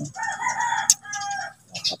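A rooster crowing once, a drawn-out call of about a second and a half in two parts, with a brief sharp click near the middle.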